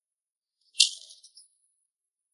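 A single short, bright rattle that starts sharply a little under a second in, with a few weaker flutters dying away within about half a second.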